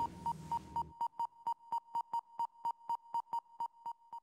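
Theme music ending in the first second, then a steady run of short, identical high electronic beeps, about four a second: a cartoon computer's text-typing sound effect as letters appear on the screen one by one.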